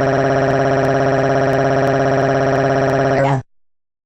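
Oddcast text-to-speech voice 'Susan' reading out a long string of the letter a as one unbroken, monotone synthetic 'aaaaah' at an unchanging pitch. It cuts off suddenly about three and a half seconds in.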